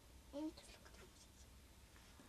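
Near silence: quiet room tone with a steady low hum. A child makes a brief vocal sound about half a second in, followed by faint scratchy rustles.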